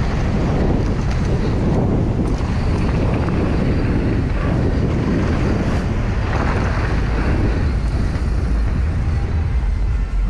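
Wind buffeting the microphone of a camera on a moving mountain bike, a steady rushing noise heavy in the low end, with the rumble of knobby tyres rolling over dirt and then pavement.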